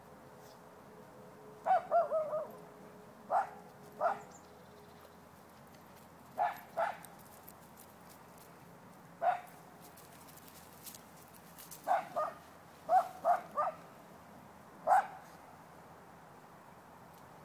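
A dog barking: repeated short barks, some single and some in quick runs of two to four, with pauses between the groups.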